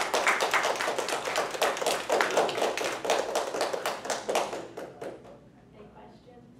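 A small audience applauding: many hands clapping quickly together, thinning out and dying away about five seconds in.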